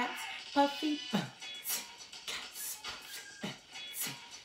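A backing drum beat for vocal-percussion practice: deep kick-drum hits that drop in pitch, about a second in and again near the end, with crisp hi-hat or snare strokes between them. Near the start a woman's voice briefly chants over the beat.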